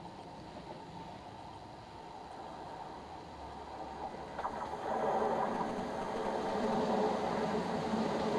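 A Class 170 Turbostar diesel multiple unit approaching. Its engines and its wheels on the rails grow steadily louder from about halfway in.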